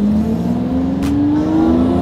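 Lamborghini Murciélago V12 pulling hard under acceleration, heard from inside the cabin, its engine note climbing steadily in pitch as the revs rise.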